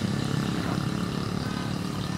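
An engine running steadily off-camera, a low even hum with no change in speed.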